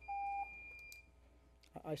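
Electronic beep of a public-comment speaking timer going off as the time limit runs out. It is two steady tones starting together: a lower one lasting under half a second and a higher one lasting about a second.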